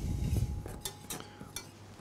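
A wire whisk stirring melted butter and golden syrup in a stainless steel saucepan, its wires clinking lightly against the pan. It is loudest in the first half second, then fades to a few scattered clinks.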